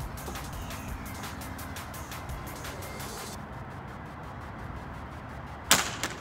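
A Thrunite TC20 aluminium flashlight dropped in a drop test hits the hard ground with a single sharp clack near the end, after a few seconds of steady low background.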